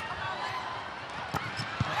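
Volleyball being played: sharp smacks of hands on the ball, one at the start, one a little past a second in and one near the end, over the steady noise of a large arena crowd.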